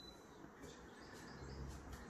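Near silence: quiet room tone with a few faint bird chirps.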